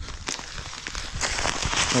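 Plastic seed bag crinkling and rustling as it is handled, growing louder and crackly in the second half.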